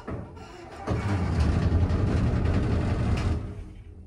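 Traction elevator car setting off and travelling: about a second in a low, steady rumble starts and runs for a couple of seconds, fading near the end.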